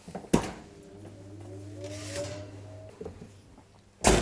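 Commercial combi oven being opened: a sharp click of the door handle, then a low motor hum with a faint whine that slowly rises in pitch for about two seconds, and another click about three seconds in.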